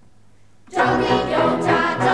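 Girls' folk choir singing a Slovak folk song unaccompanied. After a brief pause they come in together, loudly, about three quarters of a second in, starting the next verse.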